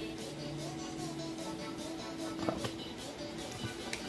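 Background music with held notes over a light, regular beat.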